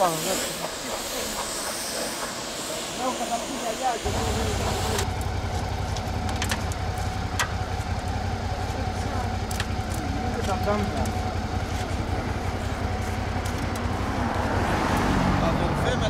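Roadside sound: a steady low vehicle rumble starts about four seconds in, under voices talking, with a few sharp clicks.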